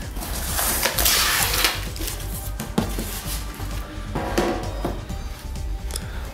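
Cardboard shipping box being opened and a shoe box taken out: rustling and scraping of cardboard, loudest about a second in, with a few sharp knocks, over background music.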